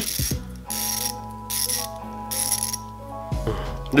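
Craftsman quarter-inch drive ratchet with a fine, high-tooth-count (about 120-click) mechanism being worked back and forth, its pawl clicking in about four quick bursts.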